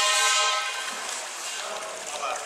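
A horn sounding one steady pitched blast over clapping, cutting off under a second in; the clapping carries on more quietly.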